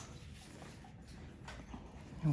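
Quiet room tone with a few faint clicks, the sharpest one right at the start.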